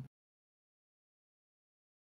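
Complete silence with no room tone at all, right after the tail of a spoken word: the audio drops out entirely.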